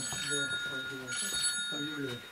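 A bell-like ring of several high tones sounds twice, the first lasting under a second and the second about a second, over a murmur of voices.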